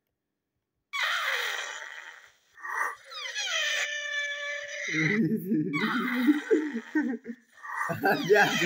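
A person blowing their nose loudly and wetly, honking into a cloth in several long goes. It starts about a second in, and the later goes are lower and rougher.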